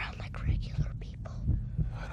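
Whispering voice over a slow heartbeat-like pulse: paired low thumps about once a second, a suspense sound effect in a film soundtrack.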